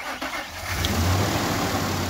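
Pickup truck engine being jump-started from a dead battery with a portable booster pack: it cranks, catches about half a second in, and then runs with a steady low note.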